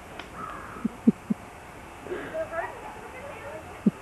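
Three short low laughs about a second in, then a child's faint high voice.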